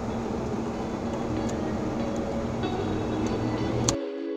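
Pickup truck pulling away and speeding up on a gravel road, heard from inside the cab: steady tyre and road noise with engine hum that grows stronger in the last second or so. A few sharp ticks of gravel stones hitting the truck are scattered through it.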